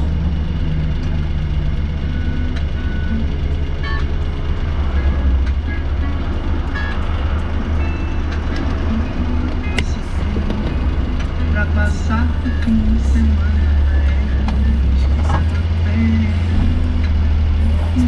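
Vehicle engine and road noise heard from inside the cab while driving through city streets: a loud, steady low rumble, with music playing over it.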